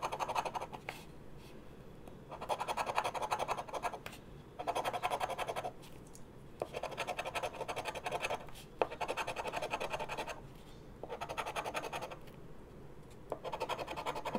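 A fidget spinner's edge scratching the coating off a paper scratch-off lottery ticket. It comes in repeated rapid bursts a second or two long, with short pauses between them.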